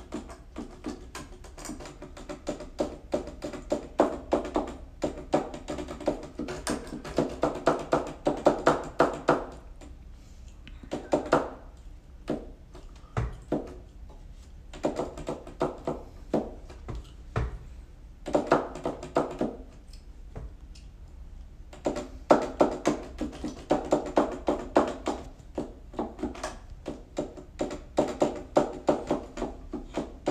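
An electronic keyboard being played in phrases of notes, with the clatter of the keys audible along with the notes. The playing stops briefly a few times before picking up again.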